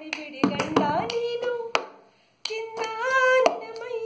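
Woman singing a Kannada song to a cup-song rhythm: sharp hand claps and the knocks of a cup on a tabletop keep the beat under her voice. There is a short pause about halfway through before the singing and percussion start again.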